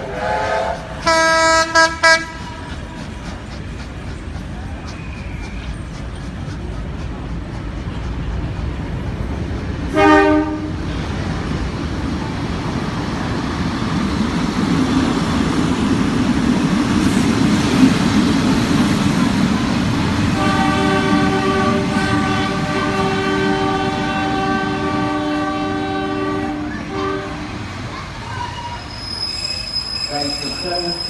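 Short train horn toots about a second in and again around ten seconds, then a heritage CPH rail motor running past close by, its rumble building, and a long steady squeal from its wheels and brakes as it pulls up at the platform.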